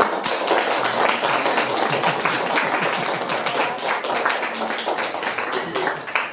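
A small audience, mostly children, clapping hard and fast, a dense steady patter of many hands that dies away at the very end.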